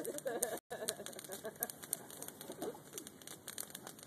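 Wooden pallets burning in a bonfire, crackling with frequent sharp pops. A low, wavering call or voice is heard in the first second or so.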